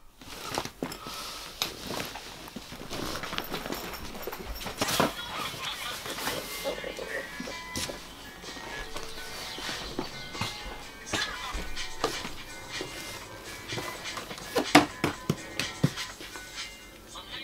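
Quiet background music with vocals, over irregular knocks and thuds of cardboard boxes and bags being handled. The loudest knocks come close together near the end.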